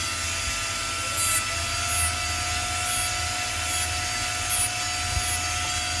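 A jeweller's rotary handpiece running with a steady high whine that rises in pitch about a second in as the motor speeds up. Its small bur cuts into a gold bracelet in short scratchy strokes.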